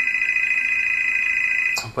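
Telephone ringing: one long electronic ring tone at a steady high pitch, lasting nearly two seconds before it cuts off.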